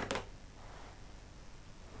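A quick sharp snip of fly-tying scissors right at the start, cutting away the waste hackle after it is tied in, then faint room tone.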